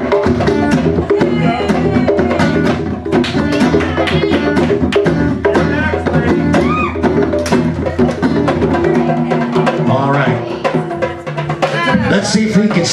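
A live band playing an upbeat song, with a steady drum and hand-percussion beat over bass and guitar.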